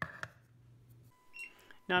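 Electronic beeps from a Nadamoo wireless barcode scanner. There is a faint click near the start. About a second in comes a steady lower beep lasting under a second, with a short higher beep over it.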